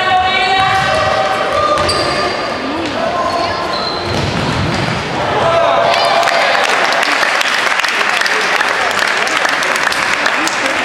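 Indoor football in a sports hall: players' shouted calls and the ball thudding on the hall floor, then about six seconds in, spectators start clapping and cheering.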